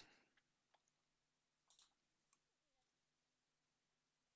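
Near silence, with a few very faint computer mouse clicks in the first two or three seconds.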